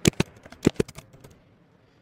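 Computer keyboard typing: a quick run of keystroke clicks for about the first second, as a short word is typed, then quiet room tone.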